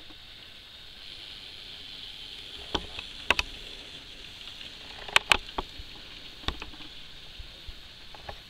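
Small electric motor of a Dapol N gauge M7 tank locomotive whirring steadily and high as it pulls two coaches, its wheels spinning: the light locomotive is slipping under the load. A few sharp clicks sound about three seconds in and again around five to six and a half seconds.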